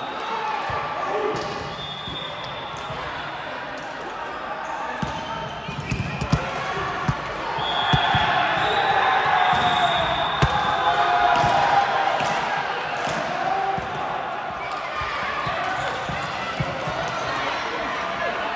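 A volleyball being bounced on a sports-hall floor and struck, with sharp thuds about six to seven seconds in and again about ten seconds in. Players call and shout around the hits, echoing in the large hall.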